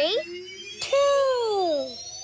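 A high cartoon character voice calls out once about a second in, its pitch falling over about a second. A thin synthesized tone rises slowly in pitch underneath.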